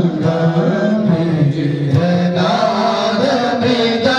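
Male priests chanting Sanskrit mantras of a Rudrabhishek puja into handheld microphones, the voice rising and falling between a few held notes.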